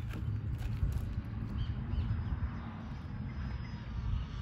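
Wind buffeting the microphone in an uneven low rumble. Near the middle, a faint steady high whine comes from the distant RC plane's brushless motor and propeller, running at low throttle.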